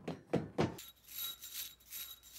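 Hurried thudding footsteps, about four a second, that stop partway through. They give way to a lighter, pulsing rustle of scurrying with faint high ringing tones.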